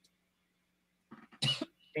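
A woman gives a short cough about a second in, after a pause of near silence with a faint low hum.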